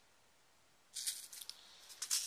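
Small plastic packets of Mill Hill glass seed beads handled and put down on a wooden table: a crinkly rattle with quick clicks, starting about halfway through.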